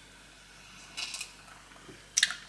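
Quiet room tone, with one short, soft sip of cider from a wine glass about a second in.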